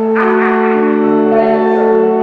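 Church organ playing sustained chords, with a fuller, brighter chord coming in about a quarter of a second in.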